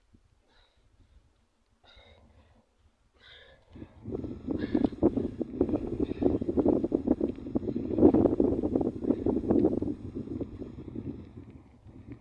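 A few short, sharp exhalations from a man working out, followed from about four seconds in by a loud, dense crackling rustle that eases off near the end.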